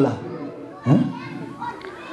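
A man's voice into a microphone, mostly pausing between phrases: a phrase ends at the start and a single short spoken sound comes about a second in. Faint higher voices are in the background.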